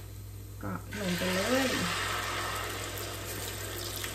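Beaten egg and cha-om (acacia shoots) poured into a pan of hot oil. It starts a steady sizzle about a second in that keeps going as the omelette begins to fry.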